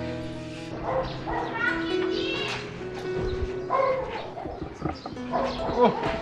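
A dog barking several times in short, separate barks, over steady background music.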